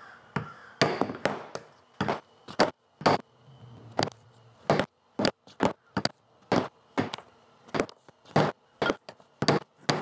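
Mallet striking a hand hole punch to drive holes through thick leather straps on a plastic punching board: a quick, uneven run of sharp knocks, roughly two a second.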